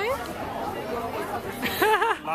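Chatter of diners at a busy restaurant terrace, a steady murmur of voices, with a short burst of a nearby voice near the end.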